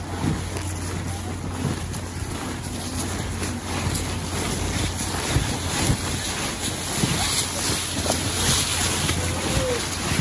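Wind buffeting the microphone with a steady low rumble, over footsteps shuffling through dry fallen leaves. Faint voices come and go in the background.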